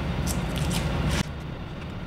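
Adhesive rubber weather-stripping tape being unrolled and handled, a few short rustles over a steady background hum that drops suddenly about a second in.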